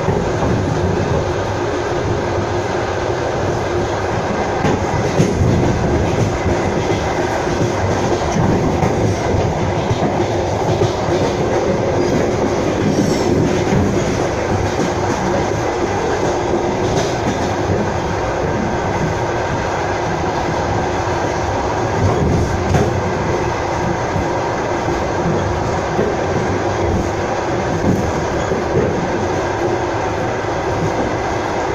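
Steady running noise of a moving passenger train, heard from inside the coach: wheels rolling on the rails, with a few faint knocks from rail joints scattered through.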